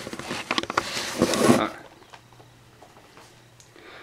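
Packaging of a Blu-ray/DVD case crinkling and rustling as it is being opened, a quick run of crackles and scrapes that stops about two seconds in.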